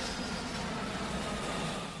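Aircraft fly-by sound effect: a steady rushing drone with a faint whine that slowly falls in pitch, fading down just as the narration comes back.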